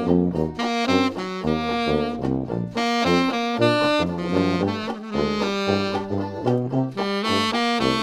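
Tenor saxophone playing a jazz melody line over a New Orleans Dixieland backing track with a rhythmic bass line underneath.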